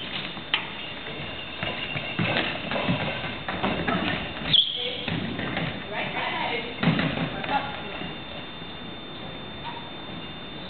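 Goalball play in a sports hall: the ball thuds on the wooden floor several times over a background of voices in the hall. A short, high, bright tone rings out about halfway through.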